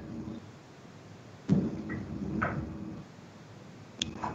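A sudden knock or thump about one and a half seconds in, followed by about a second and a half of faint rustling and small clicks, picked up on an open video-call microphone.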